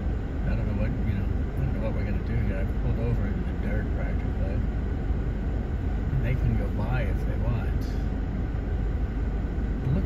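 Steady low rumble of an idling vehicle engine, with quiet voices murmuring over it.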